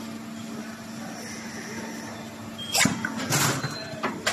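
12-cavity PET preform injection molding machine cycling with a steady hum. About three seconds in there is a sharp metallic clank, then a short noisy burst as the mold moves.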